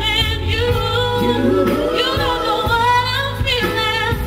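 A woman singing a pop song into a headset microphone over backing music with a steady bass line, her held notes wavering.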